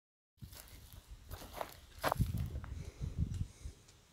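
Footsteps on dry, stony ground, with uneven low thuds and a few sharp crunches of dry grass and gravel underfoot.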